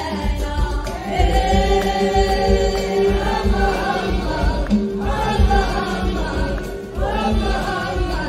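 Live Moroccan song: a woman's lead voice and a chorus of voices singing sustained lines over a steady low beat, with a brief drop in loudness shortly before the end.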